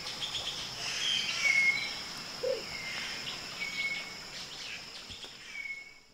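Riverside dawn chorus: a steady high insect buzz, a bird repeating a short whistled note about every one to two seconds, and a single short, low, rough note about halfway through, likely the russet-crowned motmot's deep burro-like song.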